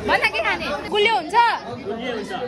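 Several voices chattering close by, in short overlapping bursts of talk.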